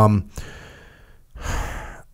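A short spoken "um", then a long breath out that fades, and a breath drawn in close to a studio microphone.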